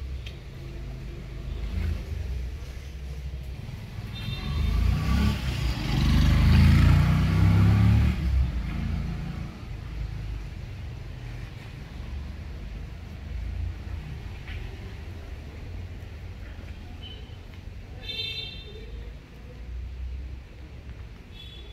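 A motor vehicle passing by: its engine rumble swells to its loudest about five to eight seconds in, then fades away.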